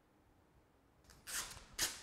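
Adhesive vinyl wrap film being peeled up off a car's paint, in a few short rustling, tearing bursts starting about a second in.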